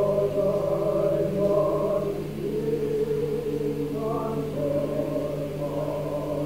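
Slow choir-like music of long, held notes over a steady low drone; the harmony drops about two seconds in and a higher note enters about four seconds in.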